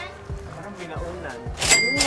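Background music with a steady beat, and near the end a single bright bell-like ding, an edited-in sound effect, that rings briefly.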